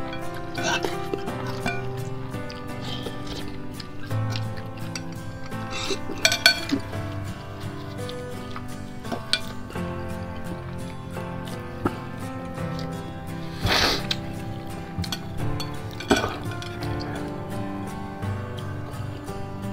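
Background music plays throughout, over eating sounds: a metal spoon and chopsticks clinking against a glass bowl, and noodles being slurped. There are a few sharper sounds, the strongest about six seconds in and again near fourteen seconds.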